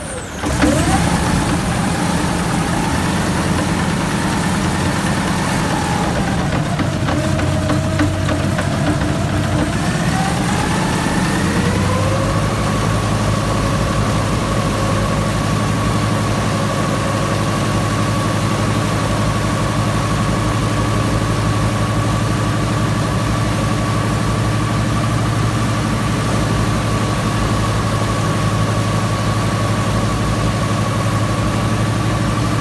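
Rebuilt Pratt & Whitney R-1830 fourteen-cylinder twin-row radial aircraft engine firing up and running loudly on a test stand, turning a four-blade propeller. Its speed wanders over the first ten seconds or so, picks up about twelve seconds in, and then holds a steady run.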